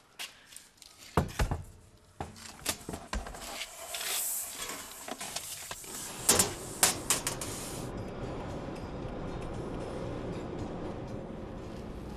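Thin steel sheets being handled and slid into a car, with scattered knocks and clanks of metal, the loudest about a second in and twice more around six and seven seconds in. About eight seconds in this gives way to the steady rumble of a car driving on a road.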